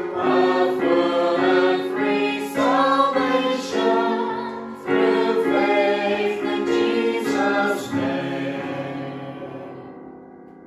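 Small mixed choir of men's and women's voices singing a hymn in harmony with electronic keyboard accompaniment. About eight seconds in, the final chord is held and fades away.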